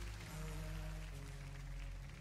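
Worship band music between sung lines of a slow worship song: steady held chords over a low bass, shifting chord a couple of times.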